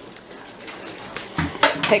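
Faint household clatter, then about one and a half seconds in a dull thump and a short burst of crackling rustle, as a voice begins to speak near the end.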